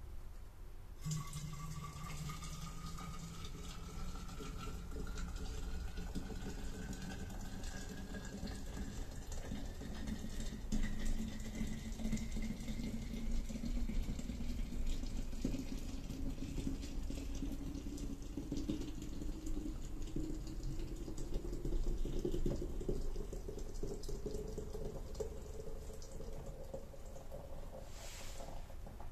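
A stream of liquid poured from a stainless-steel kettle into an air pot, starting about a second in. The pouring has a tone that rises slowly and steadily as the pot fills.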